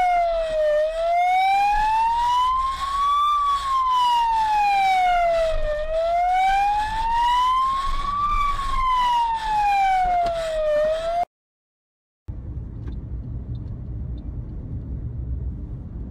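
Police car siren in a slow wail, rising and falling about once every five seconds. It cuts off abruptly about eleven seconds in. After a second of silence a steady low rumble follows.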